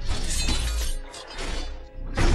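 Film sound effects of crashing, shattering metal: a long crash through the first second, then two shorter ones, over a low music score.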